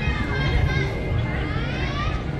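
Children's voices calling out and chattering in a crowd, with one voice rising in a long call near the end.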